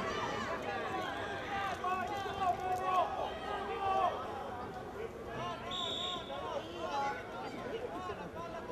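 Overlapping shouts and chatter of children and adults on a rugby pitch, with one short, steady blast of a referee's whistle about three-quarters of the way through.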